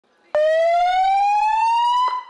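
Emergency vehicle siren starting suddenly just after the start, one loud tone rising steadily in pitch.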